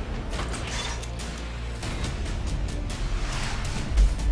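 Trailer music and sound design: a low steady rumble under a run of mechanical clicks and creaks, ending in a heavy hit.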